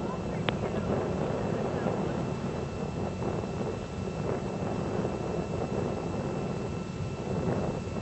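Distant rumble of the Atlas V 541 rocket climbing away, a steady low noise with no change in level, and a single short click about half a second in.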